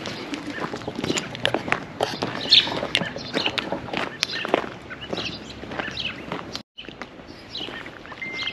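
Footsteps crunching on gravel at a walking pace, with birds chirping in the background. The sound drops out completely for an instant about two-thirds of the way through.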